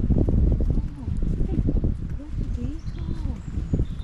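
Indistinct voices of people walking close past, with footsteps on a dirt path and a heavy low rumble on the microphone.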